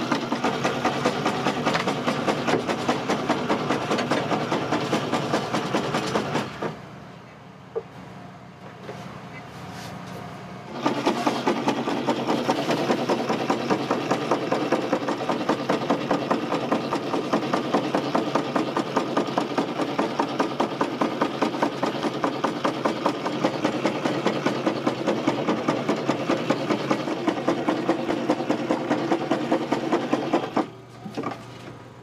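Udon noodle-cutting machine running with a fast, regular mechanical clatter as it slices rolled dough into noodles. It stops for about four seconds after roughly six seconds, then starts up again.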